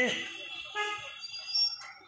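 A vehicle horn toots briefly in street traffic, a short steady pitched note about a second in, with a fainter high tone near the end. The amplified voice trails off just before it.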